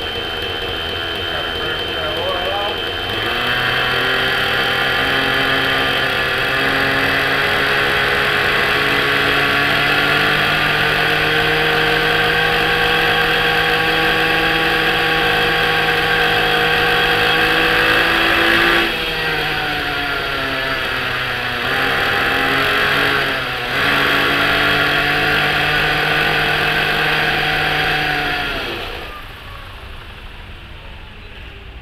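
Novarossi .57 nitro engine of an RC helicopter running up on the ground with the rotor spinning: the pitch climbs about three seconds in and holds a steady high whine while the head speed is taken with a tachometer. The revs sag twice, around the middle and a few seconds later, and recover, then wind down near the end.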